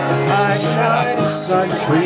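A man singing live to a strummed acoustic guitar, amplified through a PA speaker.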